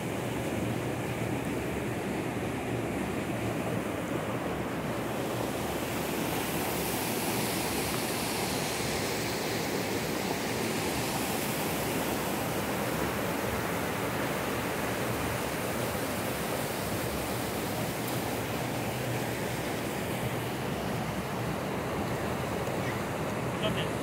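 Steady rush of turbulent river water surging through a dam, with wind on the microphone.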